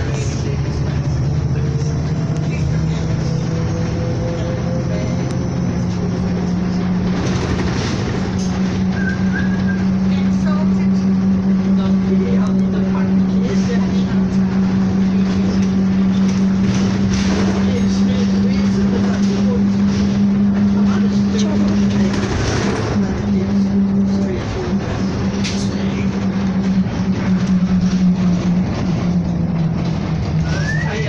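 Single-decker bus engine and drivetrain droning, heard from inside the passenger cabin. The pitch climbs over the first several seconds as the bus picks up speed, then holds steady, with a brief dip a little past two-thirds of the way through and occasional short knocks and rattles.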